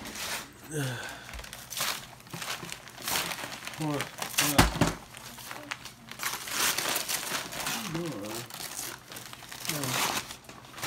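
Wrapping paper and a plastic gift bag crinkling and rustling again and again as presents are handled, with short snatches of voices in between.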